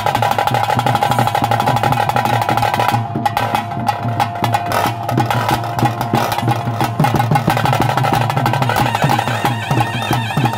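Traditional ritual music: fast, continuous drumming with a wind instrument holding a steady high note over it.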